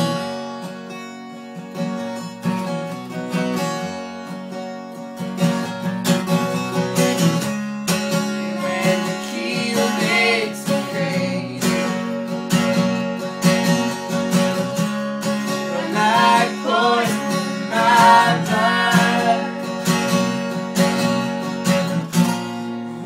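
Two acoustic guitars strummed and picked together, playing steadily. A voice carries a wavering melody line over them, about nine seconds in and again near the end, with no words picked out.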